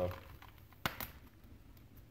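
Two sharp clicks in quick succession a little under a second in, from small parts of a brake wheel cylinder rebuild kit being handled in the hands.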